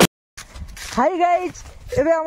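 Background music cuts off suddenly, then after a moment of silence comes faint outdoor noise and a young boy's high voice calling out briefly, about a second in.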